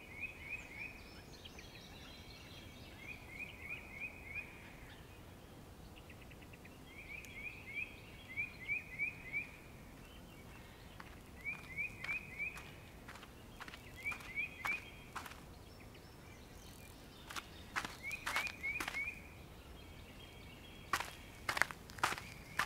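Faint bird chirping in short bursts of three to five quick rising notes, a burst every second or two, with a few sharp clicks near the end.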